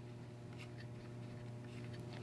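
A few faint small clicks and light scraping of hands fitting a bolt and QD mount onto a carbine's end plate, over a steady low hum.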